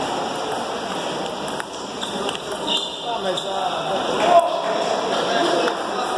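Indistinct voices and chatter echoing in a large sports hall, with a few sharp knocks, the loudest about four seconds in.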